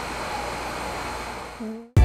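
Steady background noise of a busy eatery: an even rushing hum with faint voices of other diners underneath. It fades out just before the end.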